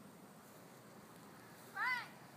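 A cat meowing once, a short call rising and then falling in pitch, near the end.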